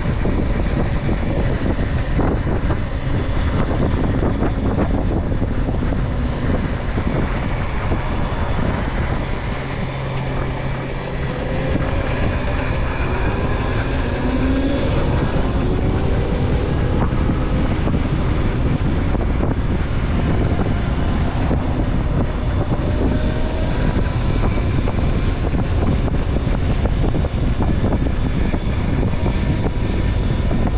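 Wind buffeting the microphone of a moving RFN Rally Pro electric dirt bike, with a faint motor whine that glides up and down in pitch as the speed changes.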